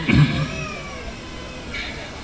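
A man's voice making a cat-like meow into a stage microphone: a thin, high call that wavers and falls away within about a second.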